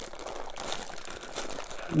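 Thin clear plastic toy bag crinkling and crackling irregularly as hands twist and pull at it, struggling to tear it open; the plastic is not easy to open.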